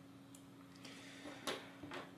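Faint small clicks of a tiny Phillips screwdriver working a miniature bolt in a plastic sensor mount, over a faint steady hum. A sharper click comes about one and a half seconds in, as the screwdriver and the sensor are set down on the tabletop.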